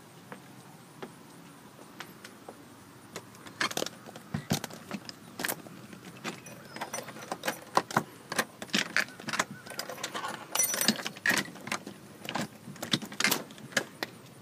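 A bunch of keys jangling and clicking in a quick string of rattles that starts about three seconds in, as a house's front door is unlocked and opened.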